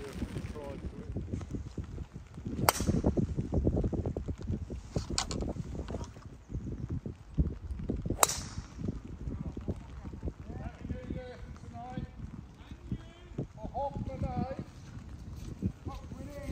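Golf clubs striking balls: a sharp crack about two and a half seconds in, a fainter click around five seconds, and another sharp crack near eight seconds, over wind buffeting the microphone.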